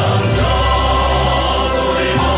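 Male vocal group singing together through microphones over an instrumental backing with sustained bass notes.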